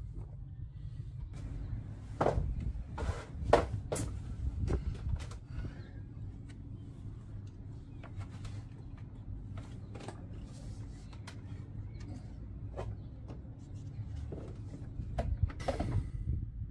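Scattered clicks and knocks of hoses, clips and engine-bay parts being handled and refitted by hand, several close together early on and a few more spaced out later, over a low steady rumble.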